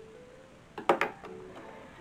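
Soft background music with a few held notes, broken about a second in by two sharp clicks close together.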